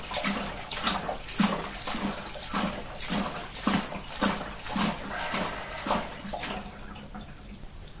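Water and yeast sediment sloshing inside a plastic fermenting bucket as it is swirled by hand, in an even rhythm of a little under two sloshes a second that dies down near the end. The swirling stirs the yeast and trub up into the rinse water to wash the harvested yeast.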